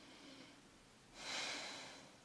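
A person breathing: a faint breath in, then a louder, hissing breath out about a second in that fades away.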